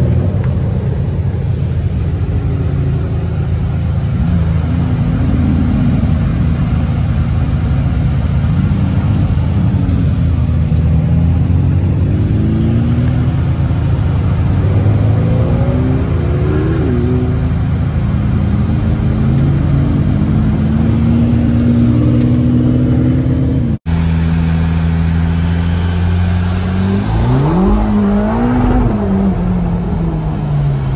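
Several supercar and hypercar engines running at low speed as the cars roll past in a line, their notes overlapping and rising and falling with small blips of throttle. After a sudden cut about three-quarters of the way through, a Ferrari Roma's engine heard from inside its cabin revs up sharply and then eases off.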